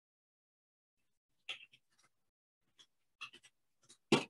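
Faint computer-keyboard keystrokes as a terminal command is typed: a few soft, scattered clicks starting about a second and a half in, otherwise near silence.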